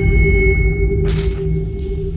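Horror film score: low sustained drones under a thin high ringing tone. About a second in, the high tone breaks off into a short, sharp rushing hiss.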